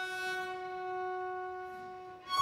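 A violin holding one long bowed note at a steady pitch, fading slightly near the end.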